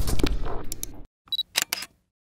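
Outro sound-effect sting for an animated logo: a dense sting with sharp strikes cuts off about a second in. A few short camera-shutter-like clicks and a brief high beep follow.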